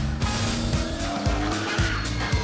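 Music with a car sound effect: an engine revving up and tyres squealing as the car corners.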